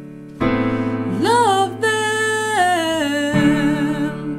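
Sustained electric-piano chords under a single voice singing a vocal run in a high register. The voice glides up about a second in, then steps down in a descending line, and the chord is struck again near the end. It is a vocal-run exercise demonstrated an octave higher.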